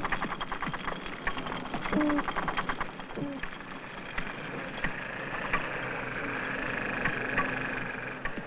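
Underwater recording of marine animal noises picked up by a hydrophone: rapid trains of clicks with short low grunts that slide upward in pitch. From about halfway, a long wavering whistle-like tone takes over.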